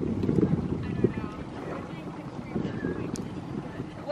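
Small waves lapping and slapping irregularly against the hull of a motor launch that sits drifting, with some wind on the microphone and faint voices from the nearby crew.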